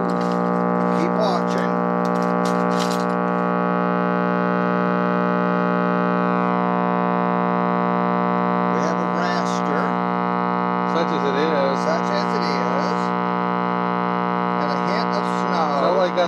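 1948 Motorola portable television humming loudly and steadily just after being switched on, the sign of a bad capacitor. A fainter tone slides downward about halfway through.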